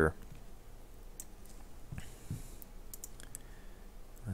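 Several sharp computer mouse clicks, scattered and starting about a second in, over a faint low room hum.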